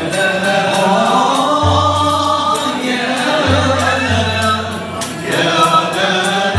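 Moroccan Andalusian (al-Āla) orchestra playing: several male voices singing the melody together over violins bowed upright on the knee and a cello, with a tar frame drum's jingles keeping a steady beat.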